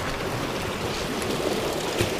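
Sea waves washing against shoreline rocks, a steady rushing wash.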